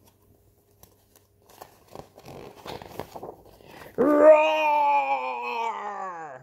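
Paper pages of a picture book rustling as they are handled and turned, then, about four seconds in, a woman's voice giving a long, loud imitation of a lion's roar that slides down in pitch.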